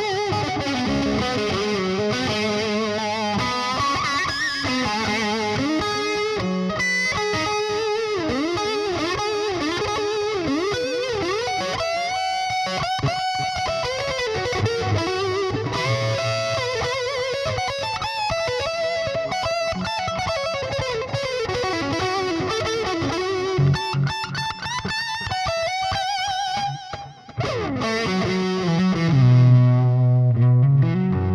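Overdriven electric guitar lead from a Fender Nashville Telecaster with DiMarzio pickups in series humbucking mode, through a Splawn Quick Rod head on its high-gain channel with a Boss DD-3 delay. It plays fast runs, string bends and wavering held notes, with a brief drop in level near the end before low, heavy notes.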